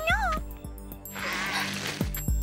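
A young cartoon character's voice makes a short rising hum, then about a second later a long breathy exhale, over soft background music.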